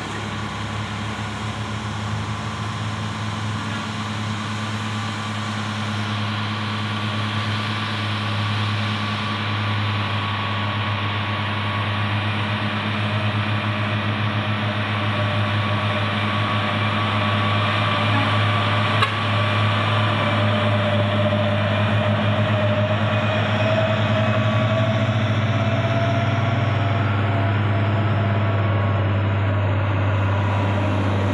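Diesel engine of a truck hauling a trailer load of concrete poles, a steady low drone that grows louder as it approaches and passes, with a second truck close behind. A single sharp click comes about two-thirds of the way through.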